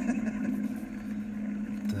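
Steady low drone of an aircraft engine on a war film's soundtrack, heard from a television in the room.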